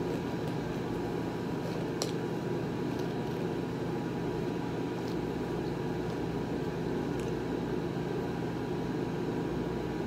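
Steady mechanical hum, even in level throughout, with a few faint soft clicks.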